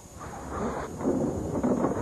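Wind rumbling on the microphone, growing louder over the two seconds, with no distinct impact or voice.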